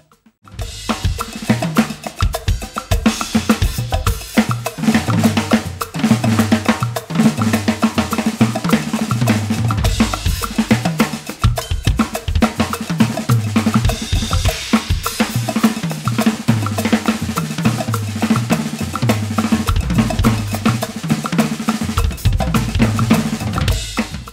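Drum kit playing a busy groove with snare, bass drum and cymbals over a repeating bass line, starting about half a second in after a moment of silence.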